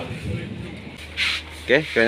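Faint voices and background murmur after the music through the sound system has stopped, with a short hiss about a second in and a man starting to speak near the end. A steady low hum runs underneath.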